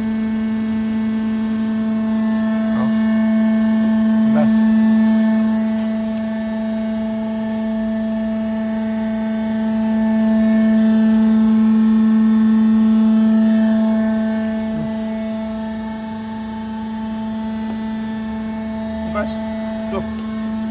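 C purlin roll forming machine running, a steady pitched hum from its drive that swells louder twice, with a few faint clicks.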